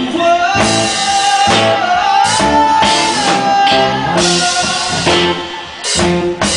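A rock band playing live: electric guitars with a long held melody line over the band.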